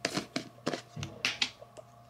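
Plastic jar of toner pads being opened and handled: a quick run of small clicks and ticks as the lid comes off and fingers pick a pad out of the jar.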